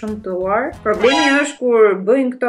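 A woman talking, her voice rising and falling in pitch, with a few short breaks.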